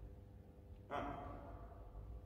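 A man's voice counting "un" once, about a second in, the word trailing off in the echo of a large gym hall. Under it there is a faint, steady low rumble.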